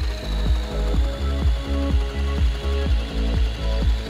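Background music with a steady beat of about four strokes a second, over the steady whirr of a Bamix hand blender's motor driving the SliceSy grating disc as carrots are grated.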